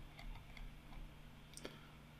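A few faint computer mouse clicks, short and sharp, with the clearest one near the end, as edges are picked one by one in a CAD program.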